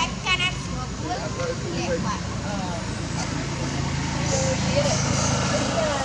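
Baby macaque squealing in short high-pitched bursts right at the start as an adult drags it by the tail, followed by scattered calls and voices over a steady low traffic hum.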